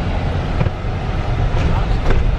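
Steady low road and wind rumble inside a moving car's cabin.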